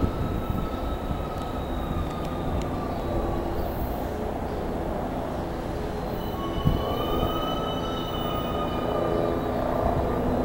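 SEPTA Silverliner IV electric multiple-unit train rolling slowly into a station platform, a steady rumble of wheels on rail. Thin high squeals come from the wheels on the curve, fading early on and returning louder from about two-thirds in, with a single knock just before.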